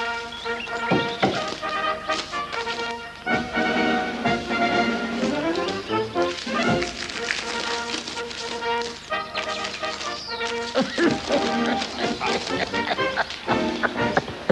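A brass band, sousaphone among its instruments, playing a tune with held brass notes that change every second or so.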